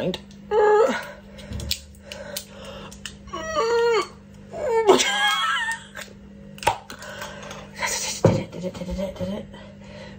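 A woman's voice in short bursts of vocalising and laughter, with a couple of sharp knocks later on and a low steady hum underneath.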